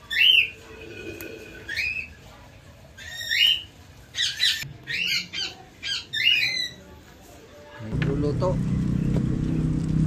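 A bird calling repeatedly: short, high chirping calls, several in quick succession, over about seven seconds. About eight seconds in, a steady low hum starts abruptly and becomes the loudest sound.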